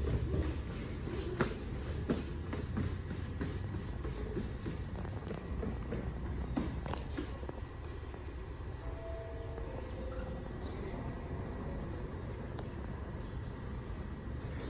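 New York City subway train standing at a platform, its equipment giving a steady low hum, with a few clicks and knocks in the first seconds.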